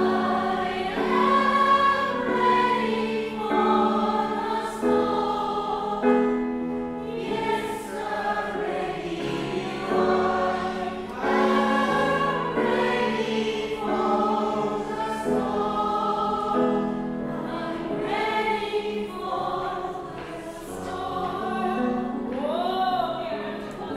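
A woman singing into a microphone with grand piano accompaniment, in long held notes over sustained chords.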